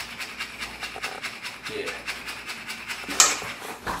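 Hand whisk beating cake batter in a metal mixing bowl, a fast steady run of scraping strokes, with a sharper knock about three seconds in.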